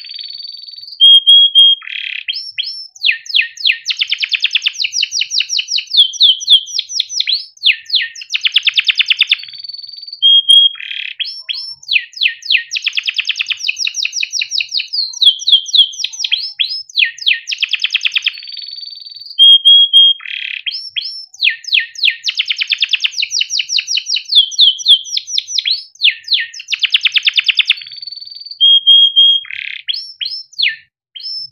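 Yellow domestic canary singing a long unbroken song of rapid trills and rolls, broken by short held whistled notes. The same run of phrases comes round again about every nine seconds.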